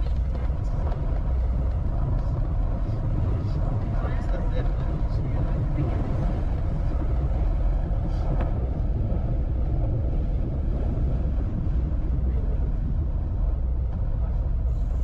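Steady low rumble of a car driving along a country road, engine and tyre noise heard from inside the cabin.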